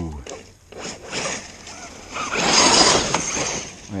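Losi DBXL-E 1/5-scale electric desert buggy driving across the field, its tyres and running gear giving a loud rush of noise that swells about two seconds in and lasts about a second.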